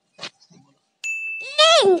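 End-screen subscribe sound effects: a couple of soft clicks, then a bright notification-bell ding about a second in. A voice with falling pitch starts just after the ding, near the end.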